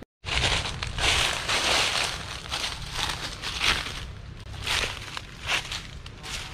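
Footsteps crunching through dry fallen leaves on a forest floor at a walking pace, a crunch every second or less.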